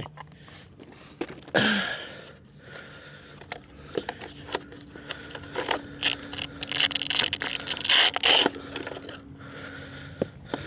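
Hand-handling noise on a foam RC jet's battery bay: scrapes, clicks and rustles, with a longer rough scrape about eight seconds in, picked up close on a clip-on mic. A man clears his throat about two seconds in.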